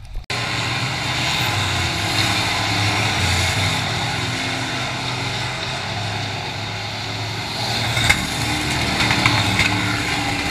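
Dirt-track race cars' engines running around the oval at racing speed, a steady dense engine noise that cuts in abruptly just after the start. There are a few sharp clicks near the end.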